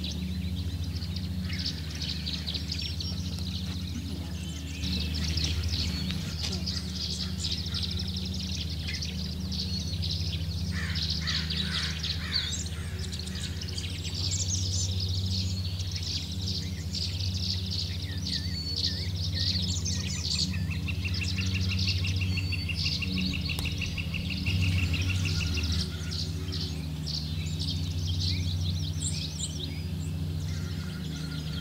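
Songbirds chirping and singing in short, high phrases, with a rapid, even trill lasting a few seconds about two-thirds of the way through, over a steady low hum.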